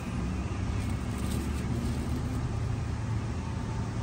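Steady low rumble of motor vehicles running nearby.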